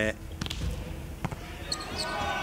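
Two sharp smacks of a volleyball: a hard serve struck about half a second in, then the ball hitting the court under a second later, with the receiver beaten by its speed, an ace.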